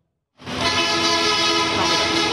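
A steady horn blast starts about half a second in and holds one unchanging, rich tone.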